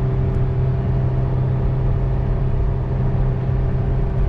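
Cabin sound of a Toyota 4Runner's 4.0-litre V6 working hard under load while towing a heavy trailer uphill in fourth gear, a steady drone that holds its pitch, with road noise beneath it.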